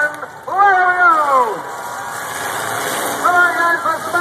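An announcer's long, drawn-out call over a public-address system, falling in pitch. It gives way to a steady din of demolition-derby car engines and crowd noise as the cars set off, and the announcer's voice returns near the end.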